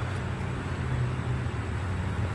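Steady low mechanical hum under a faint, even background hiss, with no distinct events.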